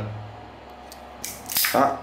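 Automatic wire stripper squeezed on a 2.5 mm wire in its 2.0 mm hole: a couple of faint clicks, then a short snap and rasp about a second and a half in as the jaws grip and the insulation pulls off, easily.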